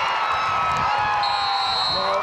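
Spectators cheering and yelling with long held shouts after a tackle. A high steady whistle joins a little past halfway.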